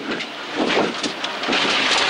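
Rally car driven flat out on a stage, heard from inside the cabin: a loud, dense rush of engine, tyre and road noise that swells and dips.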